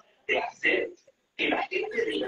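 A person speaking in short phrases with brief pauses.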